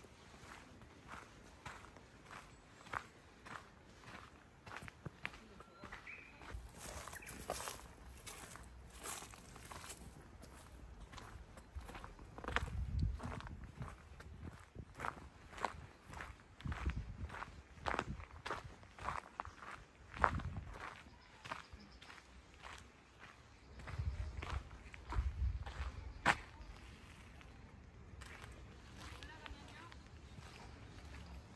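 Footsteps crunching on a dirt and gravel path at a steady walking pace, with several low rumbles in between.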